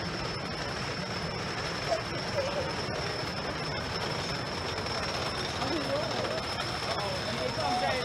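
Outdoor amusement-park ambience beside a wooden roller coaster: steady low noise with a constant thin high whine. Distant people's voices and calls come in from about two seconds in and grow busier toward the end.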